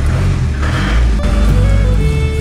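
A Mahindra vehicle's engine running with a low rumble, heard from inside the cabin as it moves slowly. Music with held notes comes in about a second in.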